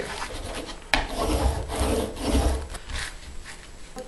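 Hands rubbing freshly glued paper down onto a chipboard binder cover: a rough scraping rub in several strokes. There is a sharp tap about a second in.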